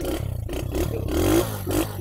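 Win 100 motorcycle's single-cylinder engine idling slowly and evenly, each firing beat heard separately, about four a second. There is a brief swell in loudness near the middle.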